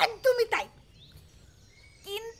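A voice speaks a few words, then a lull with faint bird chirps in the background.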